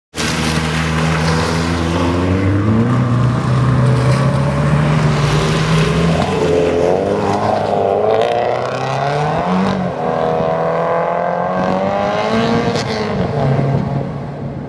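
Performance car engines driven hard, the engine note climbing and dropping several times as the cars accelerate and change gear through a corner.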